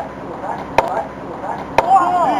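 Two sharp smacks about a second apart over faint voices; the later, nearer the end, is the pitched baseball popping into the catcher's mitt on a swinging third strike.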